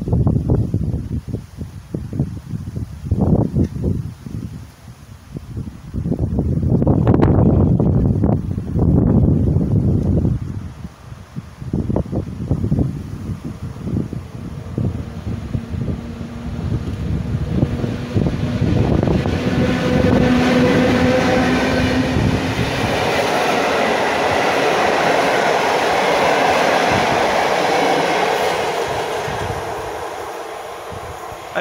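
Wind buffeting the microphone for the first ten seconds or so. Then a locomotive-hauled electric Intercity passenger train approaches and passes at speed, building from about twelve seconds in to a loud, steady rolling noise of wheels on rails with some clickety-clack, fading near the end.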